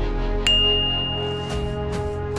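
Outro music with a single bright ding about half a second in, ringing on for about a second and a half: a notification-bell sound effect.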